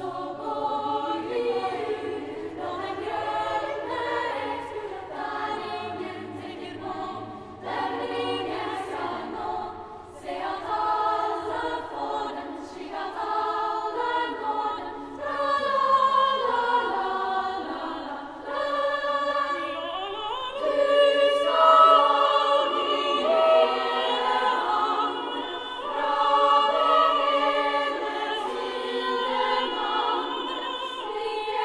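Girls' choir singing a contemporary unaccompanied choral piece: many high voices hold overlapping notes that shift against one another, with a long upward glide in pitch about twenty seconds in. The singing carries the long echo of a cathedral.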